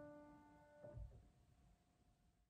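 Grand piano's last note of a simple beginner piece dying away, then a soft thump about a second in as the keys are let go. A faint tone lingers after it.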